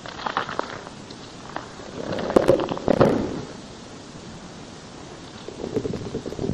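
Rustling and clicking handling noise on a lecture recording, with a louder cluster of knocks about two to three seconds in.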